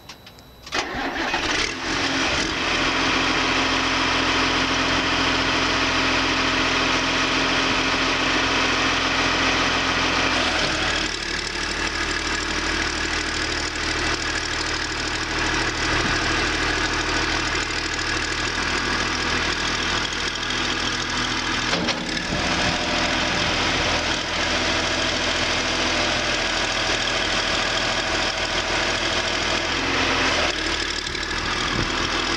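John Deere 710D backhoe loader's diesel engine cranking and catching about a second in, then running steadily. Its note changes about ten seconds in, while the front loader arms are raised on the hydraulics.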